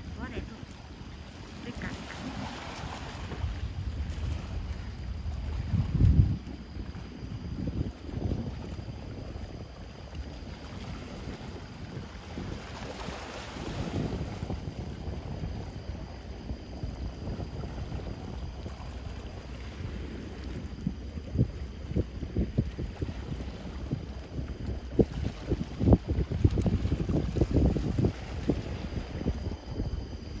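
Wind buffeting the microphone in gusts by the seashore, a low rumble that turns into rapid, louder thumps over the last several seconds.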